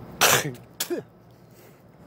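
A man clearing his throat with two short coughs about half a second apart, the second ending in a brief falling voiced tone.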